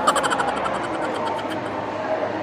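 A rapid, even run of sharp clicks, roughly a dozen a second, stopping a little before two seconds in, over steady indoor background noise.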